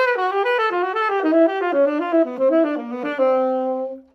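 Saxophone playing a descending jazz enclosure exercise in a continuous run of short notes, each target scale degree on the downbeat wrapped by two notes below and one above, stepping down and settling on a long held final note near the end.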